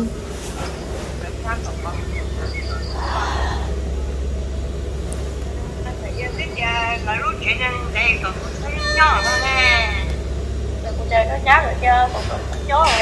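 Faint voices speaking over a steady low hum, the voices coming in from about halfway through.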